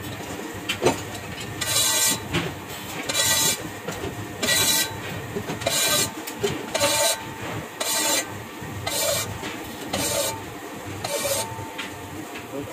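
The point of a pair of dividers scratching circles into the floor of an iron kadai: repeated rasping scrapes of metal on metal, about one a second, each lasting under a second.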